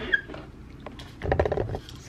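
Light clicks and a rattle as a small clear plastic box of sewing pins is picked up and handled, the loudest stretch about a second in.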